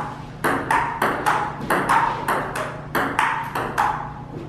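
Table tennis rally: a ping pong ball clicking back and forth off the paddles and the tabletop, about three sharp hits a second.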